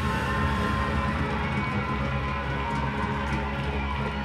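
Live rock band playing loud, with electric guitars and bass holding sustained chords over a drum kit.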